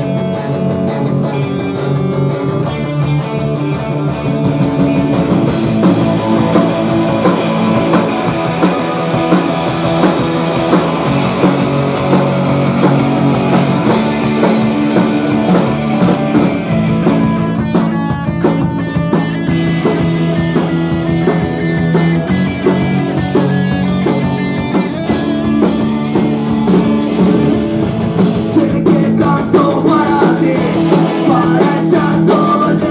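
Live rock band playing: electric guitars, bass and drums. The guitars start alone and the drums come in a few seconds in, then the full band plays on.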